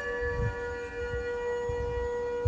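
A steady held ringing tone with fainter overtones above it, a sustained meditation drone for a breathing exercise. Soft low puffs of breath on the microphone come and go beneath it.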